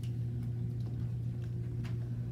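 Steady low room hum with a few light clicks, three in all, one near the end, from whiteboard markers being handled and put to the board.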